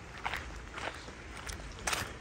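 Footsteps on dry fallen leaves and bare earth, about four steps at an even walking pace.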